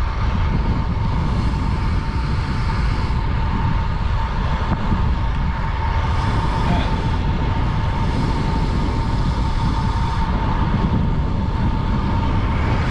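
Steady rush of wind on the action camera's microphone and tyre noise from a time-trial bike rolling at about 26–29 mph, with a faint steady whine.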